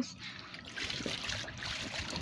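Water trickling and sloshing in an inflatable pool of water and Orbeez water beads as a boy moves in it, with water running off him.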